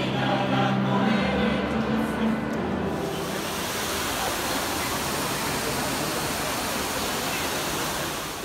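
A choir singing for about the first three seconds, then, after a sudden change, the steady rush of the Trevi Fountain's water pouring over its rock cascades into the basin.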